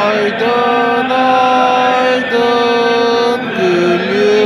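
Devotional chanting of a Turkish ilahi with zikr, sung in long held notes that step from one pitch to the next, over a steady low drone.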